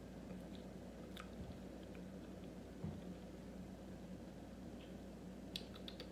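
Faint mouth sounds of someone chewing a bite of pickle with peanut butter, with a few soft clicks over a low steady hum.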